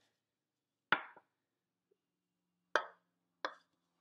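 Three sharp knocks of measuring cups against a mixing bowl as the flour and oil are emptied in: one about a second in, then two close together near the end.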